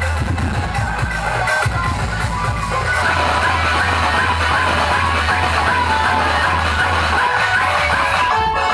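Loud music with heavy bass played through a DJ sound truck's towering speaker stacks. The music changes abruptly about three seconds in.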